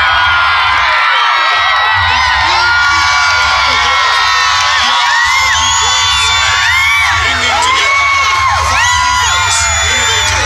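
A large outdoor crowd cheering and whooping, many voices shouting over one another, with music playing underneath and a steady low rumble.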